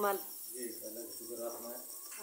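A softer, more distant voice talking, over a faint, steady, high-pitched pulsing chirp.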